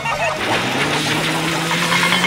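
Cartoon soundtrack: music with a long held low note that rises slightly, over a steady rushing noise.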